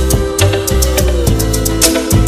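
Instrumental intro of a 1960s soul-pop record: a band playing a steady beat under held chords, with no vocal yet.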